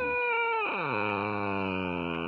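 A small shaggy dog's drawn-out vocal 'talking': a high whine that slides down, then about two-thirds of a second in drops sharply into a long, low, held note.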